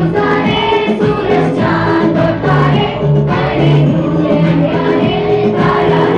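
A group of voices singing a song together over instrumental accompaniment with a steady, repeating bass note.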